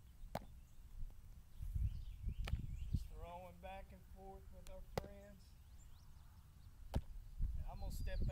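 A baseball smacking into leather gloves in a game of catch: four sharp pops about two seconds apart, over wind rumble on the microphone.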